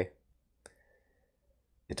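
A single short click in a quiet pause, with speech ending just before it and starting again at the very end.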